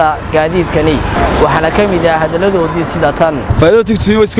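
A man talking, with street traffic, mostly passing motor vehicles, running behind his voice.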